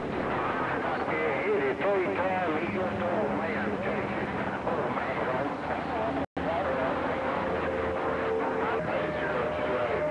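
CB radio receiver audio: several distant stations transmit over one another on the same channel, giving a garbled jumble of overlapping voices with steady whistling tones running under them. The audio cuts out completely for an instant about six seconds in.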